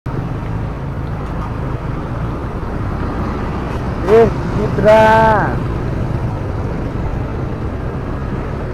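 Steady low engine and road noise of a motorcycle riding through town traffic. A person's voice cuts in briefly twice, about four and five seconds in.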